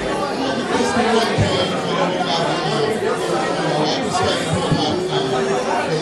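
Several people talking over one another: a dense, steady chatter of voices with no single clear speaker.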